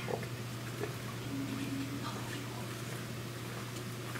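Room tone with a steady low hum, a few faint small noises and a short faint low tone about a second and a half in; no singing or music yet.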